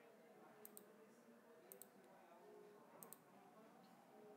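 Faint computer mouse clicks, mostly in quick pairs, about four times over near silence.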